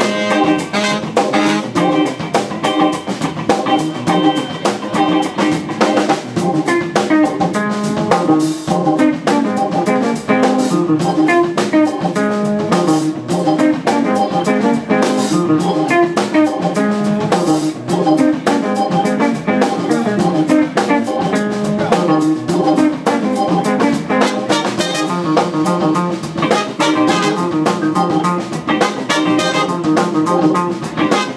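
A live band plays an instrumental tune: tenor saxophone and trumpet over electric guitar, bass, organ and drums keeping a steady beat.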